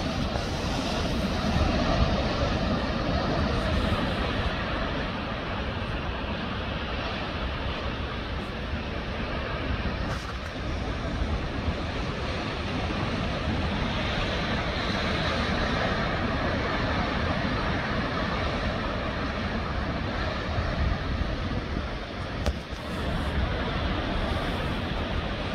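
Rough sea surf breaking over volcanic rocks and a stone jetty: a continuous rushing of white water that swells and eases every few seconds.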